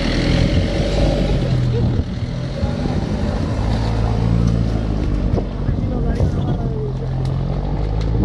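Jeep Wrangler Rubicon engine running under load as the 4x4 crawls over rough ground and pulls away uphill, the revs rising and falling several times.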